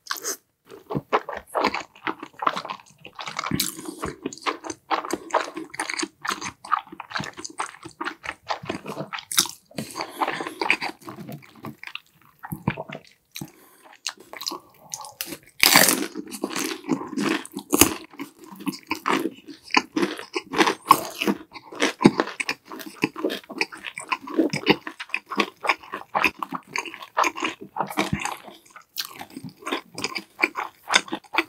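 Close-miked eating sounds of one person chewing and crunching food, a continuous irregular run of wet chews and crisp crunches, loudest about halfway through.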